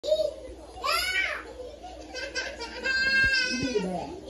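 Cartoon children's voices playing from a television, heard in the room: a short rising exclaim about a second in, then a long, high held call near the end.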